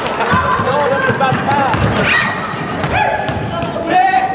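A basketball bouncing and thudding on a hardwood gym court amid players' shouts and chatter, with short sharp knocks scattered through.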